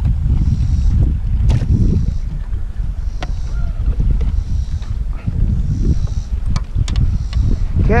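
Steady low wind rumble on the microphone in an open fishing boat, with a few light clicks.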